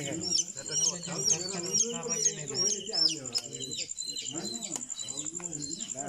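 Bird chirps: a run of short, high, hooked chirps about two a second for the first three seconds, then fewer, over a steady high pulsing insect trill, with voices talking underneath.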